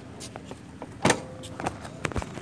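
A few sharp mechanical knocks and clatters over a steady outdoor background, the loudest about a second in with a brief ringing tone after it.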